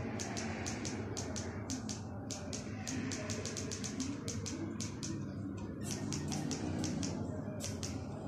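Quick, irregular clicking, several clicks a second, from a remote control's buttons being pressed over and over to step through a TV menu setting, over a steady low background hum.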